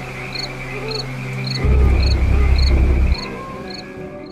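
Night-time horror sound bed: crickets chirping steadily, a short chirp repeating about three times a second over a low sustained music drone. A loud deep rumble swells in from about a second and a half in and cuts off after about a second and a half.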